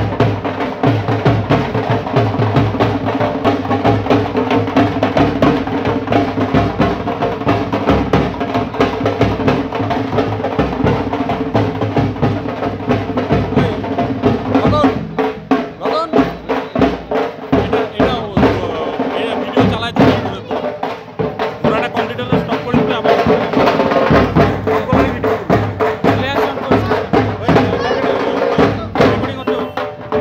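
Drums and percussion beating a fast, steady rhythm over held musical tones, with voices of a crowd mixed in.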